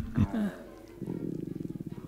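A voice-acted cartoon character's vocal sounds: the tail of a sigh in the first half-second, then from about a second in a low, rapidly pulsing rumble like a purr.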